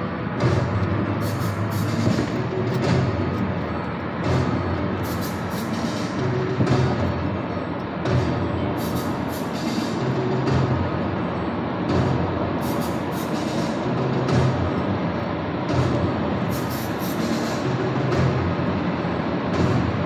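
Music with a deep, drum-heavy beat over the steady road noise of a car driving on a highway.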